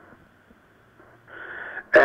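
A pause in a man's speech heard over a telephone line: faint line hiss, then a short audible intake of breath about a second and a half in, just before his talk resumes.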